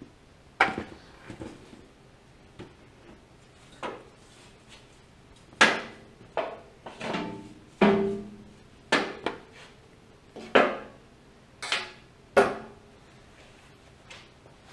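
Tools and sheet-metal body panels being handled: a series of about ten sharp metallic clanks and knocks, irregularly spaced, several ringing briefly.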